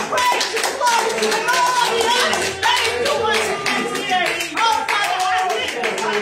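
Hands clapping in a steady rhythm throughout, over a woman's voice through a microphone and music.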